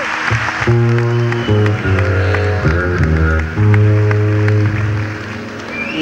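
Fretless Fender Jazz Bass playing a run of sustained low notes, one of them sliding down in pitch about halfway through. Crowd cheering fades out in the first second.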